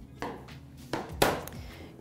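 Three short knocks on a stainless-steel work table, the third the loudest, as a rolling pin is put down and a rolled sheet of fondant is handled.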